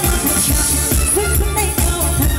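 A woman singing live into a handheld microphone, amplified through a PA over a pop backing track with a steady beat.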